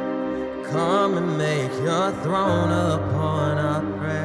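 Live worship song: a male lead vocal sings a slow, bending phrase over sustained keyboard chords, and a low bass note comes in about halfway through.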